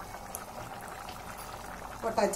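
Spiced biryani liquid with rice and mutton bubbling steadily in an open stainless steel pressure cooker.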